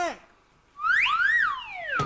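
A comic whistle-like sound effect, like a slide whistle: one whistling tone that glides up and then back down over about a second, starting about halfway in.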